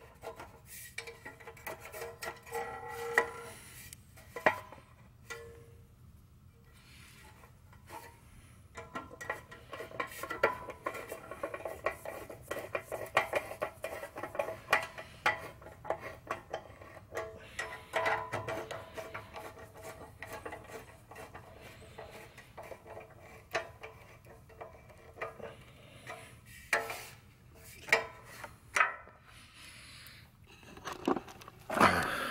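Hands fitting a fuel line and fuel tank onto a small Honda engine: irregular clicks, rubbing and small metallic clinks, some sharp, with a faint steady tone underneath.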